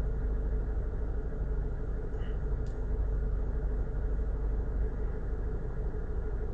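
Steady low background rumble with a faint hum, unbroken and even in level.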